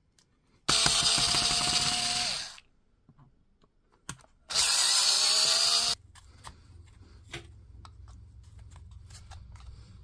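A small high-speed power tool runs in two bursts, about two seconds and then a second and a half. The first winds down as it stops and the second cuts off sharply, while the pack's spot-welded nickel strips are being removed. Light clicks and scrapes of a metal pick against the cell pack follow.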